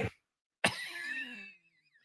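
A man's short, breathy laugh starting sharply about half a second in, falling in pitch and trailing off.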